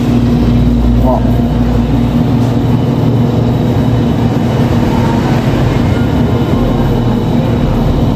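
Electric churros-forming machine running with its dough auger switched on, a steady motor hum as the dough is fed through to the rotating forming head.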